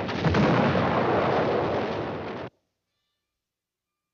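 Cartoon explosion sound effect: a dense rumbling blast that starts with a sharp hit just after the start and cuts off abruptly about two and a half seconds in.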